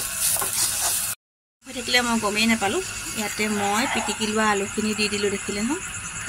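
Onions and spices sizzling in an iron kadai as a spoon stirs them, cut off abruptly about a second in. After a brief gap a pitched voice follows, in drawn-out, wavering notes.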